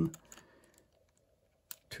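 Small plastic clicks from fingers handling the pieces of a partly disassembled 3x3 speedcube: a few faint ones, then one sharper click near the end.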